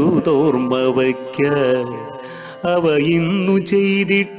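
A solo voice singing a Malayalam poem to a Carnatic-style melody, holding long wavering notes that slide between pitches over a steady accompanying tone. The phrase fades about two and a half seconds in, and a new one starts soon after.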